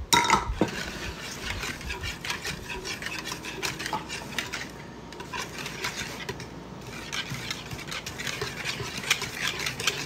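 A wire whisk beating eggs, buttermilk and oil together in a plastic mixing bowl: a steady run of quick, irregular clicks and taps as the wires strike the bowl.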